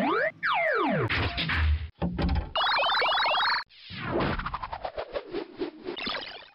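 A string of cartoon sound effects playing as the robot's 'analysing' sound: a whistle-like tone gliding up, then a long falling glide, a fast run of short rising boing-like chirps, then about two seconds of rapid, uneven clicking.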